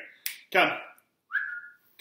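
A finger snap and then a short, steady whistle, calling a dog over between spoken calls of "come".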